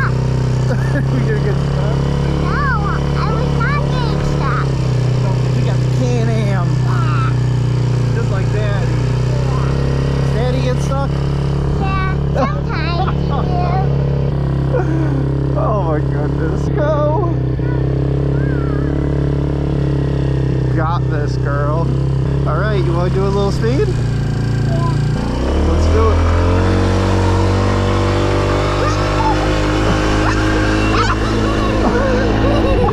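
Small Can-Am youth ATV engine running at a steady speed while riding. Near the end its pitch drops and then climbs as it speeds up, with a voice calling out over it.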